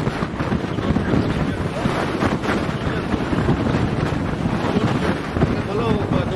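Strong storm wind gusting and buffeting the microphone, a loud steady rumble that rises and falls.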